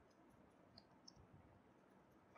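Near silence with a few faint computer keyboard keystroke clicks, about a second in.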